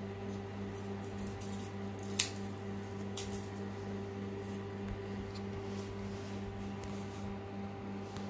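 Room heater humming steadily, with a buzz that pulses regularly several times a second. There is a single sharp click about two seconds in.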